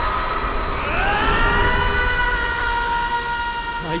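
A dramatic electronic sound effect or score: a chord of several sustained high tones glides upward about a second in and then holds steady over a low rumble, as the light burst fills the screen.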